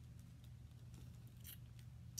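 Near silence: low steady room hum with a few faint clicks about a second in and near the end.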